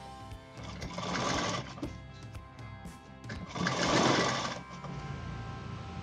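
Domestic sewing machine stitching a waistband onto trousers in two short runs of about a second each, the second a little louder, over steady background music.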